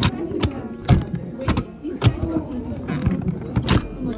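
A run of sharp knocks and clicks, about six in four seconds, from small items being handled and set down on a vendor's table, over a background of crowd chatter.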